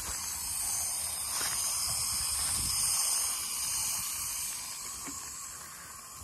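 Aerosol can of foam hissing as foam is sprayed onto a wooden board: a steady hiss that swells and then eases off.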